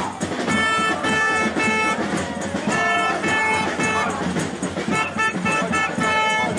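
A horn sounding in rhythmic groups of short blasts: three, then three more, then a few quicker ones near the end, over the hubbub of a marching crowd.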